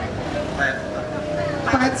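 A man talking into a microphone, his voice carried through a loudspeaker, over a steady background noise.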